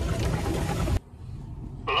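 Branches and brush scraping and slapping along a pickup truck's windshield and body as it pushes through dense overgrowth, over a low engine and tyre rumble. The noise cuts off abruptly about halfway through, leaving a much quieter cab, and a man says a word near the end.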